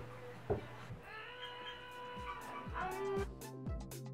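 A long, drawn-out cat-like meow, then music with a steady beat coming in during the second half.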